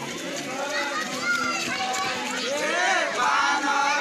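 A crowd of many people's voices talking and calling out over one another at once.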